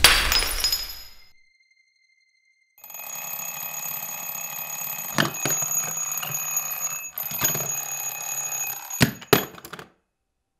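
A loud crash dies away within the first second. After about a second of silence a steady ringing starts beside a bed and runs for about seven seconds, with a few sharp knocks as a hand gropes toward it. The ringing cuts off suddenly near the end.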